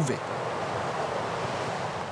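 Steady wash of sea surf breaking on the shore, an even rushing noise without a break.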